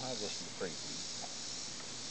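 Steady high-pitched background hiss. The trailing end of a drawn-out spoken "oh" comes at the very start, and a brief faint falling sound follows about half a second in.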